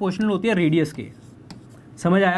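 A man's voice for about the first second, then faint scratching and tapping of a pen writing on an interactive display board.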